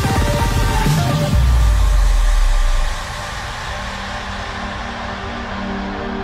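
Progressive house DJ mix at a transition: a fast run of beats leads into a deep held bass note that cuts off about three seconds in. It gives way to a fading wash of noise and soft held chords as a quieter breakdown begins.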